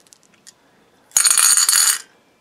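A handful of small amethyst rune stones poured out of a bowl, clattering and clinking against each other and the bowl for about a second near the end.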